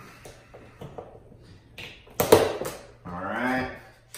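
Small clicks of hand pliers or cutters working at the cable of a Ridgid FlexShaft drain cleaner, then one sharp snap a little after two seconds in as a piece is cut off. A few lighter clicks follow, then a short wordless sound from a man's voice.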